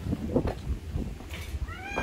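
A domestic cat meowing once near the end, a drawn-out call that rises slightly in pitch and then holds.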